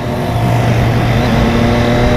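Motorcycle engine running at a steady cruising speed, its pitch holding level, with wind rushing over the microphone.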